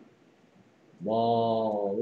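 A man's voice holding one drawn-out syllable at a steady pitch for about a second and a half, starting about a second in after near silence. It is a syllable stretched out while sounding out the word "placement".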